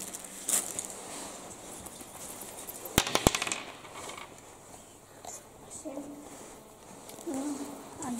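A pair of dice thrown onto a wooden table: a quick clatter of sharp clicks about three seconds in. Faint voices follow later.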